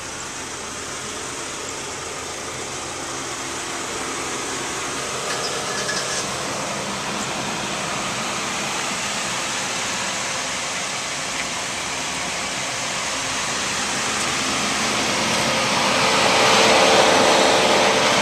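A 1991 Chevrolet Corsica's engine idling steadily and running smooth, growing louder near the end.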